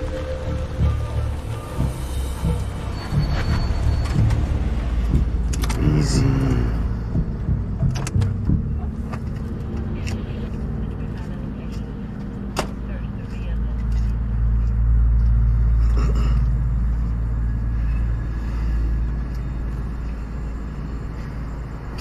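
Film soundtrack of a car's low, steady engine rumble under background music, the rumble swelling about two-thirds of the way through, with a few sharp clicks.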